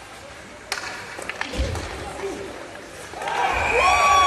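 Ice hockey play: a sharp puck impact crack less than a second in, a few lighter stick clicks and a dull thud, then from about three seconds in a burst of shouting and cheering that rises quickly as a goal is scored.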